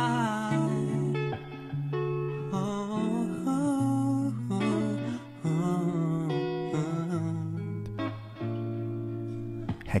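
A man singing a slow ballad with live band accompaniment of guitar and bass. The sung phrases waver with vibrato and pause briefly between lines over sustained low notes.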